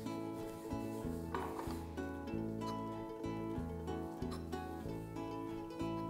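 Background music of plucked-string notes in a steady, even rhythm. One faint knock of a knife on a wooden board comes about a second and a half in.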